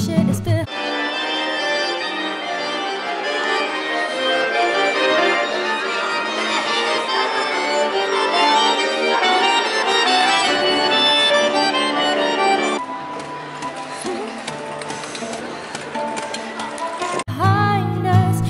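Street busker's accordion playing a tune with many held notes and chords; the sound drops quieter about thirteen seconds in.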